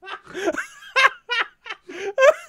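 A man laughing hard in a run of short, breathy bursts.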